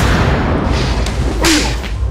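Dramatic whoosh sound effect: a loud rushing swoosh that swells twice more, over a low rumbling drone, used as a tension stinger in a TV drama soundtrack.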